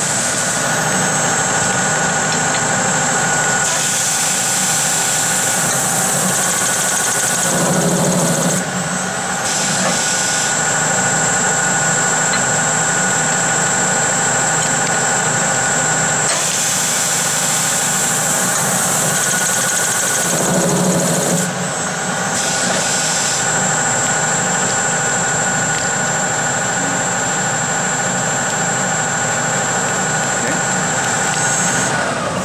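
JF Berns Servo Auto Champ chamfering machine running with a steady motor whine while it chamfers an aluminum hex bar. Twice, about thirteen seconds apart, several seconds of louder cutting noise build up, each ending in a short, lower rumble as the cycle finishes.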